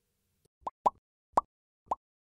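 Cartoon 'bloop' pop sound effects of an animated subscribe end screen: four short pops, each a quick rise in pitch. The first two come close together, then two more follow about half a second apart.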